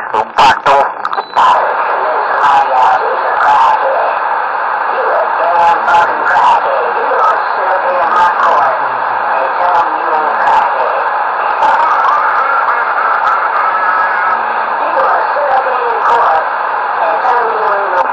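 Radio speaker carrying garbled, overlapping voices with no clear words, squeezed into a narrow, tinny band. After a loud choppy burst in the first second or so, it settles into a steady, unbroken jumble.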